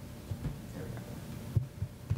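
Low, steady room hum with scattered dull thumps and one sharper knock about one and a half seconds in.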